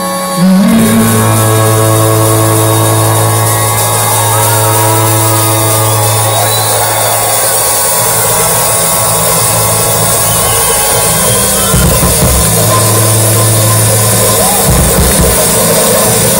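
Live electronic-leaning band music played loud through a large stage PA, with a held synth bass note that shifts pitch a few times.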